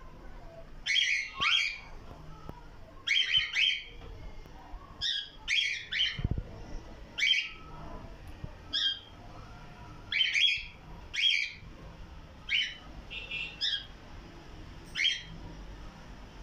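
Caged cockatiels giving short, high chirping calls, often two in quick succession, about one every second or two.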